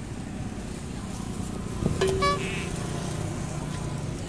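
Steady low rumble of urban road traffic, with a brief horn toot about halfway through.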